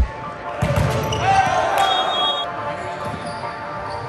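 Indoor volleyball game sound in a gym: a sharp hit about half a second in, then players' voices and shoe noise on the hard court, settling to a quieter hall hum.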